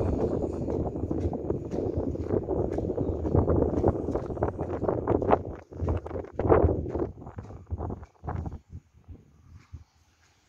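Wind buffeting the phone's microphone on an open high rooftop: a loud, gusty rumble that breaks into separate gusts and knocks after about five seconds and falls away near the end.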